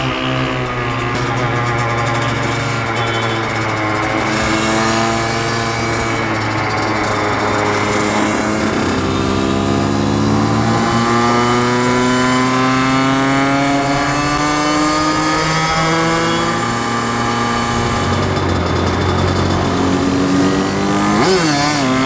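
Kawasaki KX100 two-stroke single-cylinder dirt bike riding in traffic, its engine pitch climbing and falling back at each gear change, with one long climb in the middle. A steadier, lower engine drone runs beneath it.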